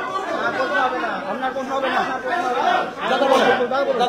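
Overlapping voices in a large room: several people talking at once.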